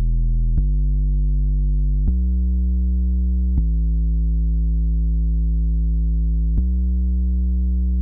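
Electronic music: a low, sustained synthesizer bass note that steps to a new pitch four times, with a short click at each change.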